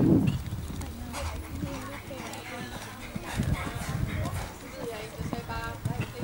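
Hoofbeats of a show-jumping horse cantering on sand arena footing between fences.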